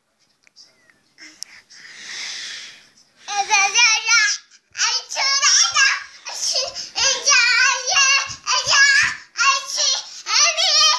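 A toddler girl's high voice singing and babbling without clear words, wavering up and down in pitch, from about three seconds in. A short breathy hiss comes just before it.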